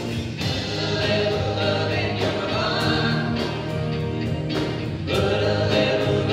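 A church praise band playing live, with several voices singing over guitar and keyboard.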